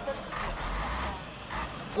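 Street noise with the low rumble of a motor vehicle's engine, swelling briefly through the middle.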